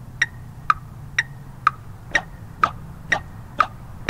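Drumline count-off in tempo: eight sharp, evenly spaced clicks, about two a second, setting the beat for the drums.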